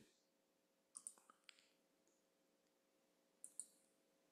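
Near silence with a few faint short clicks, mostly in pairs: two about a second in, one more half a second later, and another pair near the end.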